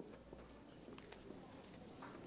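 Near silence: faint open-air background with a few faint clicks.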